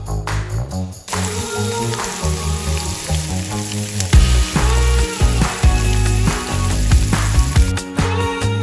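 Steak sizzling as it fries in butter in a frying pan, starting about a second in, over background music.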